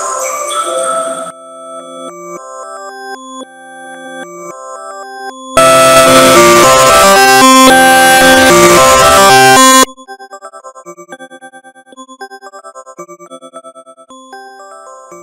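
A Samsung phone tone melody of bell-like notes, run through a chain of digital effects. It starts vocoded, then plays as clean separate notes. From about five and a half to ten seconds in it comes back reversed, much louder and distorted. Near the end it returns quietly, chopped into rapid pulses.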